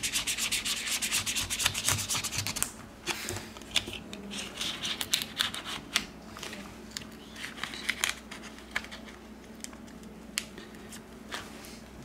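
Ultra-thin plastic opening card scraping along the edge of a phone's glass back cover as it works through the adhesive. A fast run of scraping strokes fills the first few seconds, followed by scattered scrapes and small ticks.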